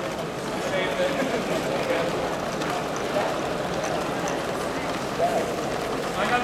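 Steady hubbub of indistinct voices from a crowd of spectators in a large hall, with no single clear talker.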